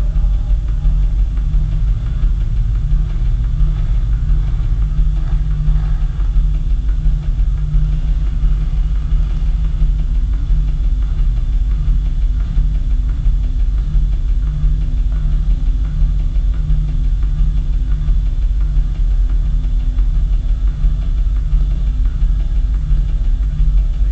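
Live electronic rock instrumental with no vocals: a heavy, repeating low synthesizer bass pulse with a drum-machine beat, filling the hall.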